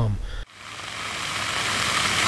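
Rain falling heavily, a steady hiss that begins suddenly about half a second in and grows louder.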